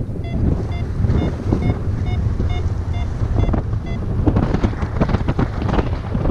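Paragliding variometer beeping its climb tone, about two short high-pitched beeps a second, a sign that the glider is climbing in rising air; the beeps stop about four seconds in. Under it, heavy wind rush from the airflow on the microphone, gustier near the end.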